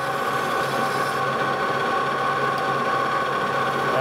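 Metal lathe running steadily under power with a steel shaft turning in the chuck, its drive giving a steady whine over a low hum.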